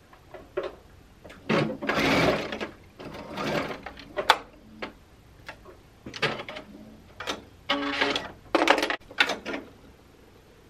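Brother Innov-is computerized sewing machine running in several short bursts, sewing a few tacking stitches to hold a knit neckband's seams in line, with a sharp click about four seconds in.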